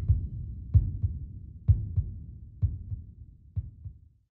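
Heartbeat sound effect: low thumps in lub-dub pairs, about one beat a second, fading out.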